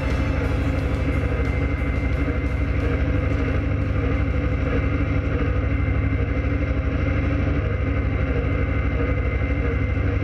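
684 tractor's engine running steadily under load, driving a rotary cutter (bush hog) through roadside grass and brush, heard from the tractor. Music fades out over the first few seconds.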